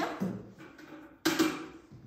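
A metal watering can being lifted out of a box, with one sharp clank about a second in that fades away.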